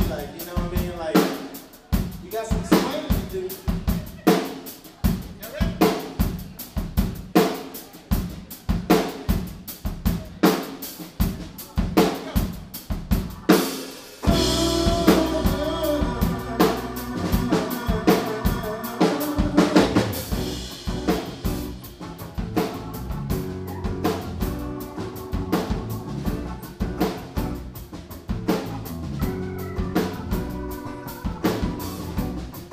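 A live band starting a song: a drum kit plays a steady groove alone. About halfway through, the rest of the band comes in and the sound suddenly fills out with a strong bass and sustained chords over the drums.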